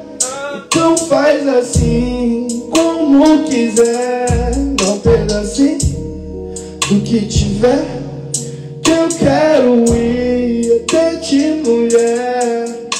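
A man singing a melodic freestyle hook into a handheld microphone over an instrumental beat, with sustained chords and deep bass notes.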